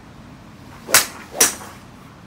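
Two sharp golf swing sounds about half a second apart, each a brief rising swish ending in a crack.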